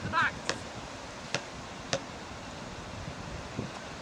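A basketball bouncing on an outdoor hard court: three sharp bounces a little under a second apart in the first two seconds, and a fainter one near the end. A short high-pitched call at the very start is the loudest sound.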